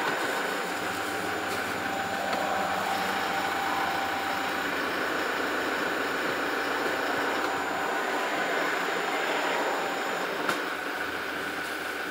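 Toyota Hilux 2.8-litre turbo diesel idling steadily with a faint steady whine, while the selector is moved through the gears to bring the automatic transmission fluid up to temperature. A light click sounds shortly before the end.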